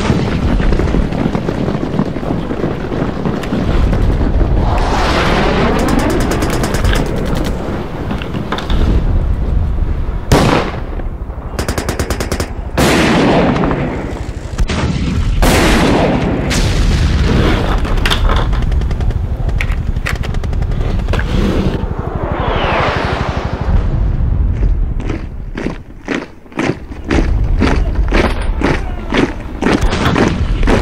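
Battle sound effects: gunshots and explosions, with rapid bursts of machine-gun fire about a third of the way in and again near the end. Twice a sweeping sound rises and falls in pitch over the shooting.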